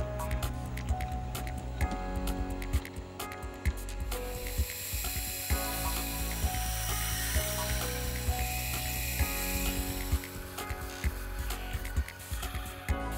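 Soft background music with fine, rapid metallic ticking from a machine spindle reaming and drilling pivot holes in steel stock. About four seconds in, a steady high hiss of cutting takes over for several seconds, then the ticking returns near the end.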